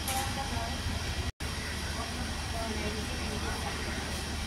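Outdoor background of faint, indistinct voices over a steady low rumble, with a brief gap about a second in.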